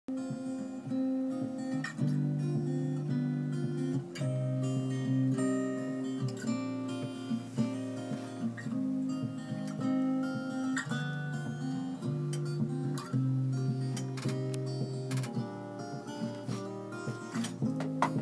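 Acoustic guitar picking the instrumental intro of a song, its chords changing about every two seconds.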